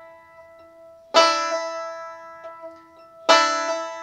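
Five-string banjo played slowly. There are two pinched notes, about a second and about three seconds in, each followed by a hammer-on on the second string from the first to the third fret, and each rings and fades.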